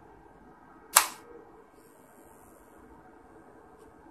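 A single sharp plastic click about a second in: a handheld clamp meter's jaws snapping shut around a cable.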